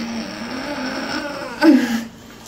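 A woman in labour straining as she pushes: one long, steady moan, swelling louder and falling in pitch near the end.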